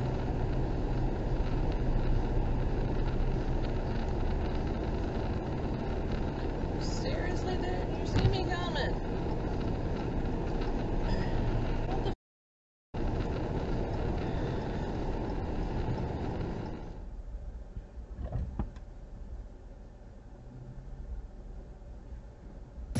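Steady road and tyre noise inside a car at highway speed, picked up by a dashcam, with a brief louder sound about eight seconds in. The noise cuts out for a moment near the middle and is noticeably quieter from about seventeen seconds in.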